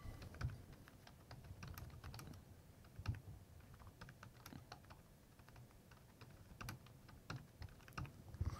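Computer keyboard being typed on: a run of faint, quick, irregular keystrokes as a line of text is entered.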